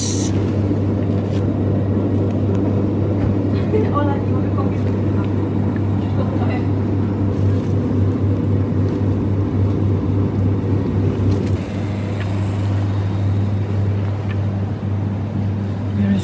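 Steady low hum of shop refrigeration units, with a few light rustles and clicks of plastic-wrapped food being handled.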